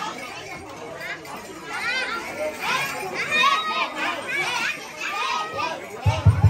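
Children's high voices calling out and chattering over a crowd's background talk, loudest in the middle.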